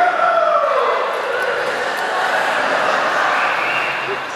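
Audience applauding and cheering, with a long falling whoop in the first second.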